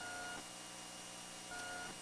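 Two short, faint electronic beeps, one at the start and one about a second and a half later, over a steady low hum.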